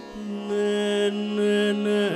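Carnatic vocal duet with violin accompaniment holding one long steady note, which begins a fraction of a second in after a brief dip in level.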